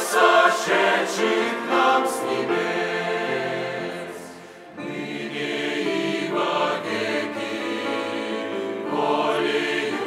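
Large mixed choir of men's and women's voices singing a hymn together; the singing fades down briefly about four seconds in, then comes back in full.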